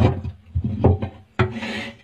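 Hoary bamboo rat gnawing bamboo: about four sharp crunching bites roughly half a second apart, with a short hissing noise near the end.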